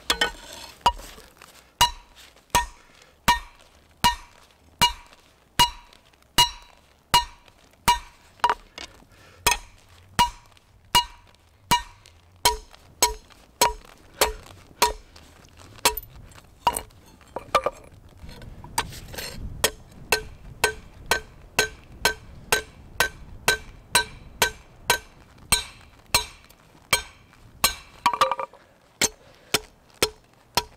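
Blacksmith's hand hammer striking a steel bar on a flat steel plate used as an anvil, forging out a spearhead. Steady blows at about one and a quarter a second, quickening in the second half, each with a clear metallic ring. The pitch of the ring changes partway through.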